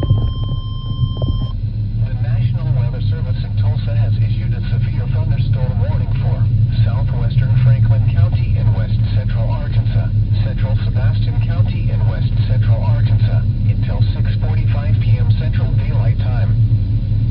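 A steady electronic alert tone cuts off about a second and a half in, then an indistinct broadcast voice plays over a loud, steady low rumble inside a car.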